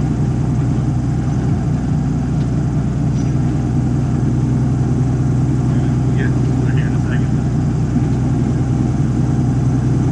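Extra 330LX's six-cylinder Lycoming engine and propeller running steadily at low taxi power, heard from inside the closed canopy.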